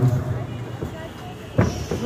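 Faint background voices and hall noise, with one brief sharp sound about a second and a half in.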